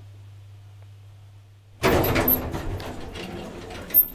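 Otis roped hydraulic elevator arriving: a low steady hum cuts off a little under two seconds in, and the car's sliding door opens loudly with a rattle that fades over the next two seconds. A sharp click comes near the end.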